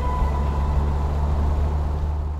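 Morgan Plus Six's turbocharged straight-six engine running steadily at cruising speed, a low, even hum.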